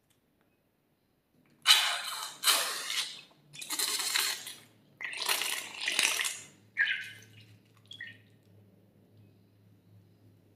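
Clear slime squeezed out through the cut tip of a latex balloon into a dish of slime: a run of about six loud, wet squirts, starting about a second and a half in and ending about seven seconds in, with one small last squirt just after.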